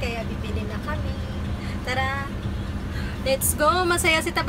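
A steady low hum and rumble inside a stopped car, with a woman's voice speaking in short bursts at the start, around two seconds in, and near the end.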